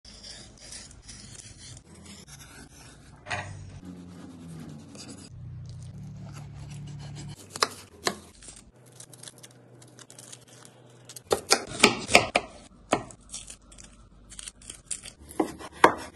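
A Y-peeler scraping the skin off a potato, then a kitchen knife cutting an onion and a potato on a wooden cutting board. The blade knocks on the board twice about halfway through, then in a quick run a few seconds later and again near the end.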